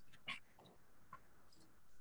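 Near silence on a video-call line, with a faint brief sound about a third of a second in and another, fainter one a little after a second.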